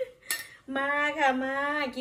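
Metal cutlery clinks twice against a china plate in the first half-second. Then a woman's voice calls out, long and drawn out.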